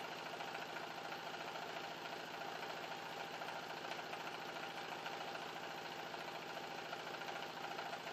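A steady, faint motor-like hum with a hiss of background noise, unchanging throughout.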